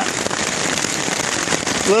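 Heavy rain hitting a tarp shelter, heard from underneath: a dense, steady patter of drops.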